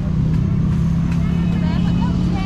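A steady low motor hum with voices talking in the background.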